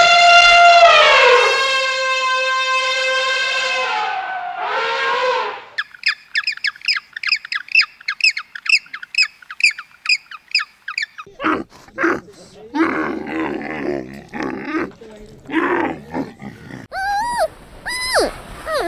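An elephant trumpeting: a loud, long call that falls in pitch, then a second shorter call. It is followed by a fast run of high chirps, about four a second, and then a jumble of short animal noises and knocks.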